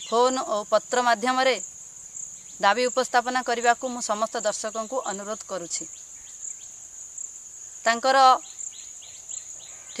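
Crickets trilling in a steady, high continuous drone, heard under a person talking in short stretches.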